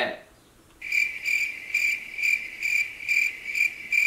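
Cricket chirping, dubbed in as a sound effect: a clean, high chirp pulsing about twice a second, starting abruptly about a second in after a moment of near silence. It is the comic 'crickets' cue for an awkward silence.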